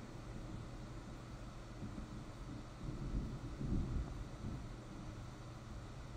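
Faint steady room noise, with a few soft low rumbles and rustles a little past the middle.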